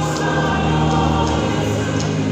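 A church choir singing together, many voices holding long, steady notes.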